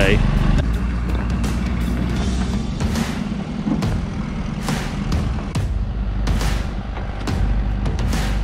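Ford Super Duty flatbed truck's engine running steadily, with background music over it.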